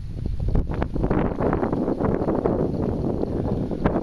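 Wind buffeting the microphone: a loud, rushing noise with scattered crackles, heaviest through the middle.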